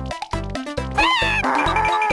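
Cartoon background music with a steady beat. About a second in, a short, high, wavering cry from the cartoon character is heard, followed by a scratchy rustling as he scratches at the bugs on his body.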